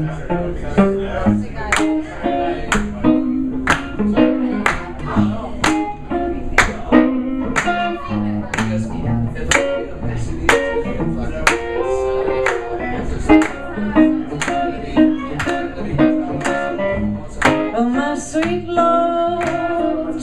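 A live band of two electric guitars, upright bass and drums plays a song, with a steady beat of sharp drum hits about once a second.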